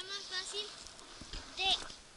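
A young boy's high-pitched voice in short, wavering bursts, with a few dull low thumps just past the middle.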